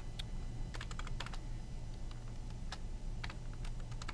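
Computer keyboard being typed on, keys clicking in short irregular clusters as a name is entered.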